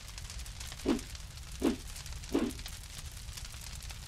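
Crackling fire sound effect, a steady hiss full of small pops, with three short low whooshes about three-quarters of a second apart.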